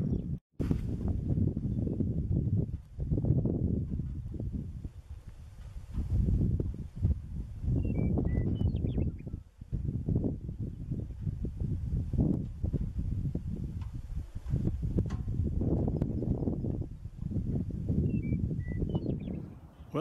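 Wind buffeting an outdoor camera microphone, a deep rumble that swells and fades in gusts. A short bird call of a few descending chirps comes twice, about eight seconds in and again near the end.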